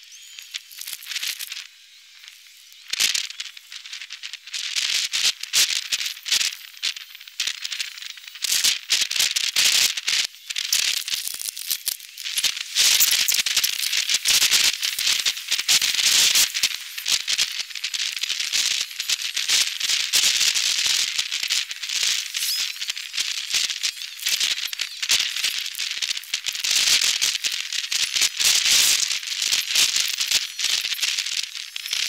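Precipitation pattering on a hard surface close to the microphone under a storm cloud: a rapid, dense run of sharp clicks, sparse at first and thickening into a steady crackling patter after about four seconds.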